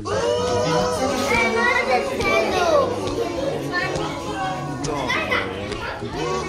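Children's voices chattering and calling out over one another in a busy crowd.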